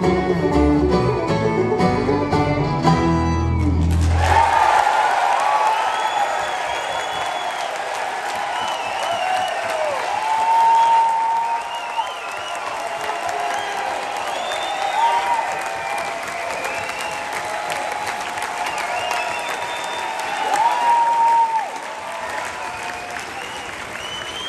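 A bluegrass band with banjo, mandolin, guitars, fiddle and upright bass ends a tune on a held final chord about four seconds in. After it, an audience applauds steadily with cheers and repeated shrill whistles.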